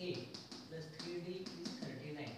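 Chalk tapping and scraping on a blackboard as an equation is written: a run of short, sharp taps. A man's voice murmurs over it.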